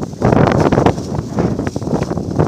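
Wind buffeting the microphone: a loud, gusting rush that dips briefly at the very start and then surges back.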